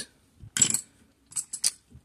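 Hard plastic graded-coin slabs clicking against each other as they are handled: one clack about half a second in, then a few quick clicks near the end.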